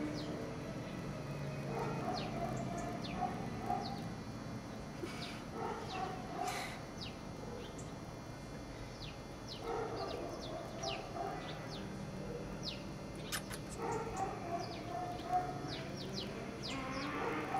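Dogs barking in short runs several times, over many short high chirps.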